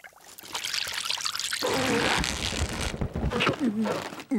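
Cartoon slurping and gulping of soup from a bowl, wet and noisy, heaviest in the middle, ending in a short falling vocal sound.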